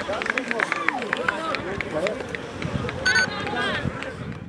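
Voices shouting across an outdoor football pitch, with scattered short knocks, and a short whistle blast about three seconds in.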